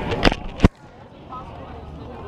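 Two sharp knocks about half a second apart, the second the louder, then a faint steady outdoor background.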